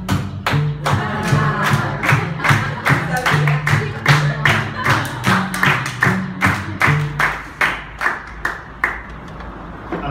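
Audience clapping steadily in time, about two to three claps a second, along with an acoustic guitar rhythm. The guitar stops about seven seconds in and the clapping carries on for about two more seconds.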